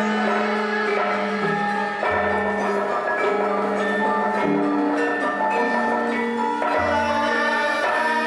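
Javanese gamelan playing: sustained, ringing tones of bronze metallophones, with two short deep low notes about two seconds in and near the end.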